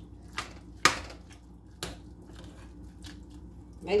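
A metal utensil knocking against a stainless steel pot while stirring soup: a few sharp, separate clinks, the loudest about a second in, over a faint steady low hum.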